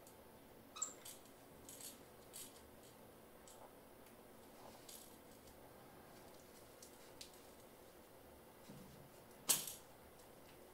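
Scattered small rattling clicks from the rattle inside a plush toy fox as a capuchin monkey handles and chews it, with one louder sharp click near the end.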